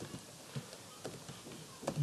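Computer keyboard typing: a handful of faint, unevenly spaced keystroke clicks.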